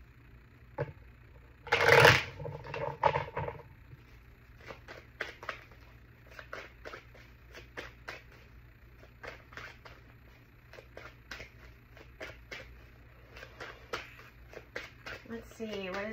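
Tarot cards shuffled by hand, a long run of soft card slaps and flicks, two or three a second. A louder rush of noise comes about two seconds in.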